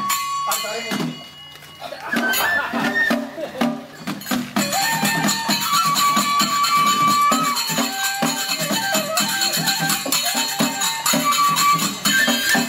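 Ise Daikagura festival music: transverse bamboo flutes (fue) play a held, stepping melody over steady beats of drum and small cymbals. The music drops away briefly about a second in, then picks up again and settles into a regular beat.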